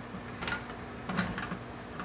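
Side-cut can opener turning on the rim of a steel can, cranked by hand, with a few sharp mechanical clicks, one about half a second in and two just after a second. It separates the lid from the can and leaves smooth edges.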